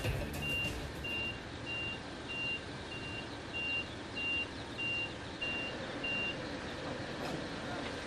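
Truck's reversing alarm beeping: short high beeps of one steady pitch, a little under two a second, that stop about six seconds in, over steady background noise.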